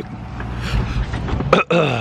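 Steady car-interior noise, then near the end a man clearing his throat in a short vocal sound that falls in pitch.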